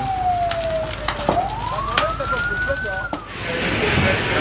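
A wailing siren: a single tone sliding slowly down, then rising and falling again over about two seconds, with a few sharp cracks over it. Near the end it gives way to a steady rushing noise.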